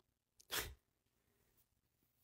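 A single short intake of breath from the narrator about half a second in, otherwise near silence.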